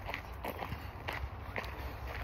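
Footsteps of a person walking on a trail, about two steps a second, over a steady low rumble.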